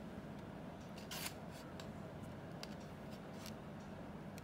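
Faint handling noises: a brief plastic rustle about a second in and scattered light clicks as a rubber handheld-radio antenna is handled next to its plastic sleeve, over a steady low hum.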